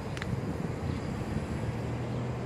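Steady low rumble of outdoor background noise with no speech, and a very brief faint high blip just after the start.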